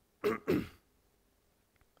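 A man clears his throat with two short coughs in quick succession.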